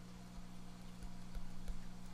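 Quiet room tone: a steady low hum with a few faint ticks and soft thumps.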